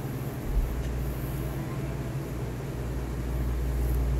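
Steady low hum of an electric room fan, with a deeper rumble that comes in about half a second in and holds.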